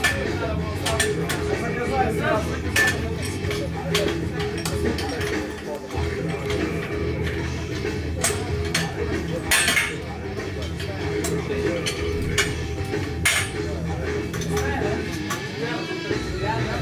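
Metal barbell plates and collars clinking and knocking at irregular intervals as loaders change the weight on a squat bar. The sharpest clanks come about nine to ten seconds in and again about thirteen seconds in, over background music and room chatter.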